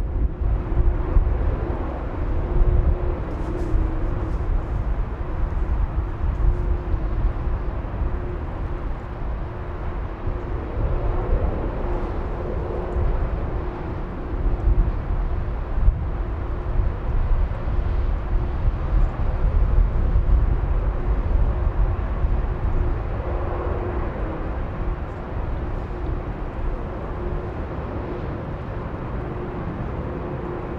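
Boeing 747-400 Combi's four General Electric CF6 turbofans running at taxi idle: a steady low rumble with a constant droning tone as the jet rolls slowly onto its stand.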